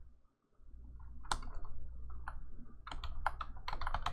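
Computer keyboard keystrokes: a few scattered clicks, then a quick run of keys near the end as a word is typed.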